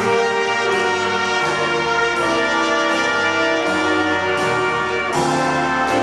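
High school jazz big band playing, the brass and saxophone sections sounding held chords that change every second or so.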